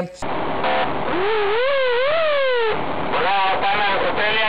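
Police patrol car's electronic siren giving a short up-and-down sweep, followed by a man's voice over the car's loudspeaker ordering the driver, heard from inside the moving patrol car over engine and road noise.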